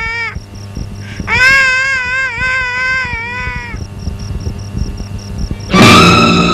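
A baby crying in long, wavering wails: one cuts off just after the start, and another runs for about two and a half seconds. A loud burst of film score comes in near the end.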